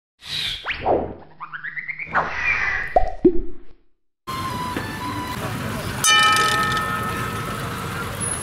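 Logo-animation sound effects: a swish, a quick rising run of bright pitched notes, then two or three falling 'plop'/'boing' glides, ending in a moment of silence. Then steady outdoor street-stall noise, and about six seconds in a single metallic clang that rings on for a second or two.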